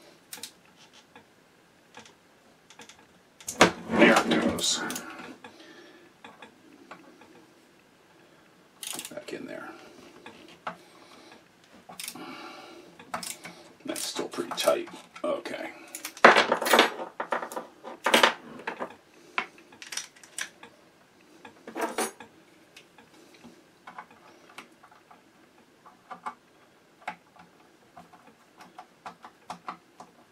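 Ratchet screwdriver clicking and steel tools and parts clinking against the cast-iron underside of a Singer 127 sewing machine as its screws are loosened: scattered clicks with a few louder clunks, and a short run of rapid ratchet clicks about halfway through.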